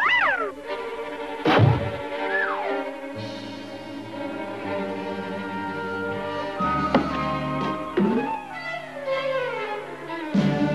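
Cartoon orchestral underscore with strings, punctuated by thuds about a second and a half in and again around seven and eight seconds, with a long falling glide near the end.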